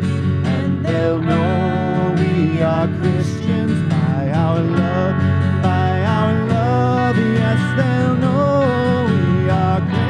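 A worship song sung by a woman and a man together, accompanied by a steadily strummed acoustic guitar.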